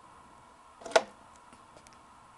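A single sharp click about a second in, from a quarter-inch guitar cable plug being handled in the rear effects-loop return jack of a Marshall AVT275 amp, over quiet room tone.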